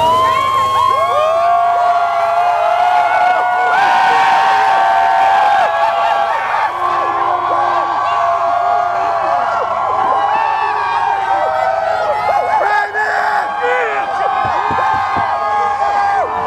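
A large crowd cheering and shouting, many voices overlapping without a break, over a steady low hum.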